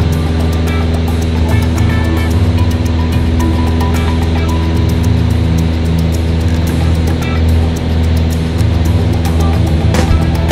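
Piper PA-28 light aircraft's engine and propeller droning steadily at full takeoff power through the takeoff roll and climb, heard from inside the cabin. Background music plays over it.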